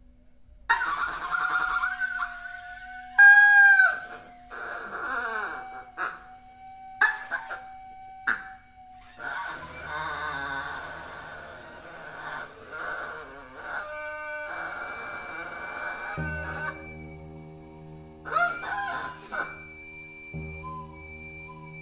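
Duck call blown in free improvisation: harsh squawks and honks that bend in pitch, in short bursts, over a held steady high tone through the first half. About two-thirds of the way in, a steady low drone of several tones comes in under further squawks.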